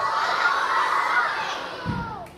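A large group of schoolchildren shouting together in a hall, one loud burst of many voices that fades away near the end, with a single thump just before it dies out.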